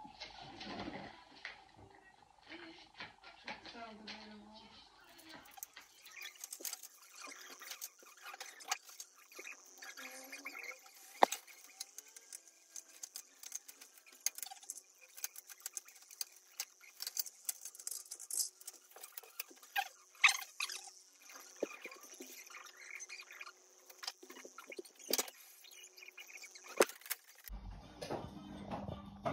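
Light clicks and rustles of Christmas ornaments and their clear plastic packaging being handled and hung on an artificial tree. A steady high hiss comes in about five seconds in.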